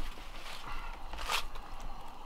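Handling noise from a camera being picked up and swung around: a low rumble throughout, with a brief rustle or scrape about two-thirds of the way through.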